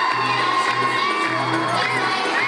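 Young children shouting and cheering over music with a steady low beat.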